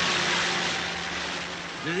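A loud rushing whoosh sound effect that starts suddenly and slowly fades, with a steady low hum beneath it.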